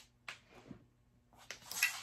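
A person moving about a small room: a few faint short knocks and rustles, a near-silent moment, then rustling that builds near the end.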